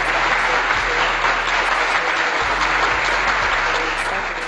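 Applause from a crowd, steady and loud, fading just after the end: a dubbed-in applause sound effect.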